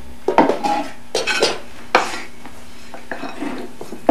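Kitchenware being handled: dishes, a metal cake pan and utensils clinking and knocking in a handful of separate strikes, the loudest in the first two seconds, with fainter taps about three seconds in.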